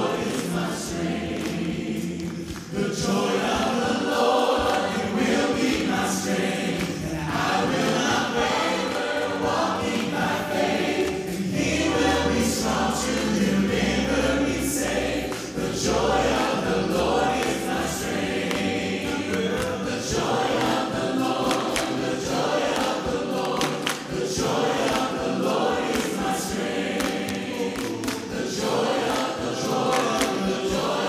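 A mixed group of male and female voices singing a Christian song together in harmony through microphones, with a low bass part underneath.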